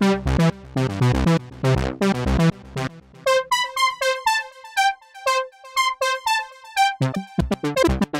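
Software synthesizer in Logic Pro playing a looping step-sequenced melody of short, plucky keyboard-like notes. About three seconds in the pattern switches to a sparser, higher line, and near the end it switches back to a lower, busier pattern.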